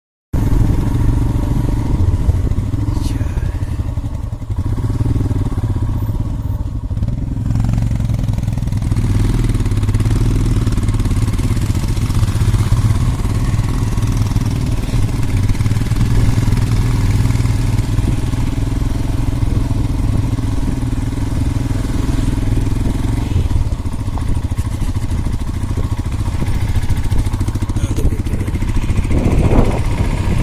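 Motorcycle engine running steadily while riding along a road, heard from on the bike, with wind rushing over the microphone.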